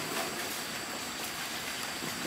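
Steady rush of a flowing stream, an even water noise with no distinct events.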